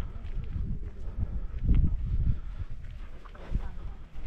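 Wind rumbling on the microphone of a camera carried on foot, with irregular thudding footsteps on a dirt path.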